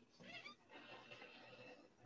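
Near silence: faint room tone on a video-call audio feed, with a brief faint wavering sound about a third of a second in.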